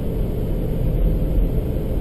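Steady low rumble of a car's engine and road noise, heard from inside the car.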